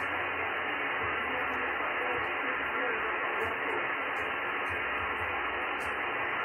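Steady hiss from a ham radio transceiver's speaker, tuned to the RS-44 satellite's single-sideband downlink with no station transmitting; the noise is cut off by the receiver's narrow voice filter.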